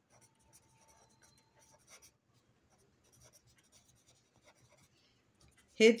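Pen writing on paper: faint, scattered scratching strokes.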